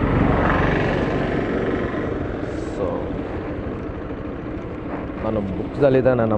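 A vehicle engine running with a rapid steady pulse, loudest in the first second or two and then easing off.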